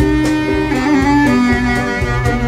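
Bass clarinet playing a solo melodic line over a live band accompaniment.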